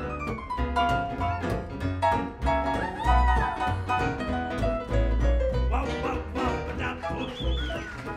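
Live jazz band playing an instrumental passage, with keyboard and plucked double bass. A few sliding high notes come in about three seconds in and again near the end.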